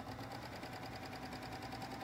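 Baby Lock 55th Anniversary four-thread serger running at a steady speed, humming with a rapid, even stitching rhythm as it sews a four-thread overlock and its blade trims the fabric edge.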